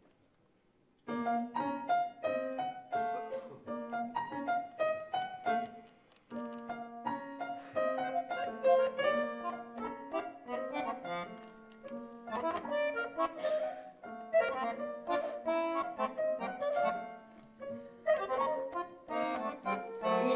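Accordion and grand piano improvising free jazz: a run of short, detached chords and notes with some held tones, starting about a second in, with a brief gap near six seconds.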